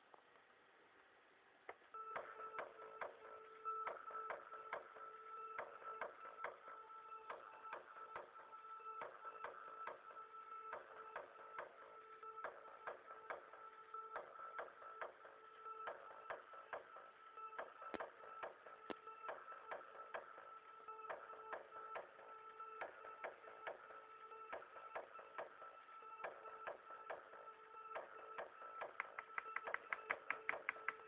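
A looped electronic dance beat played back from music-making software on a laptop: a repeating pattern of sharp, clicky percussion hits over two steady held tones. It starts about two seconds in, and the hits come faster near the end.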